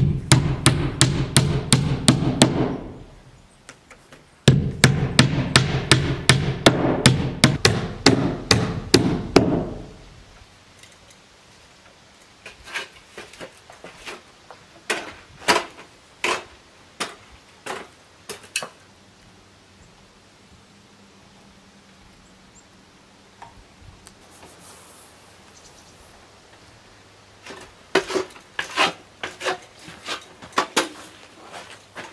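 A hammer nailing a window's nailing flange to the wall, in quick light taps so the flange doesn't snap. There are two fast runs of taps in the first ten seconds, then scattered single blows, and another short run near the end.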